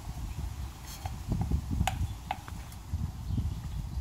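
Uneven low rumbling noise with a few short, sharp clicks about halfway through.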